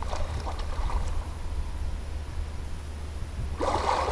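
Wind rumbling on the microphone over faint lapping water, then near the end a rushing splash of water as a person standing chest-deep starts to move.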